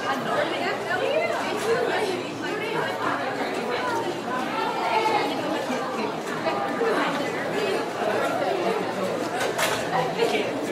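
Classroom chatter: many voices talking over one another at once in a large, echoing room, with a brief click near the end.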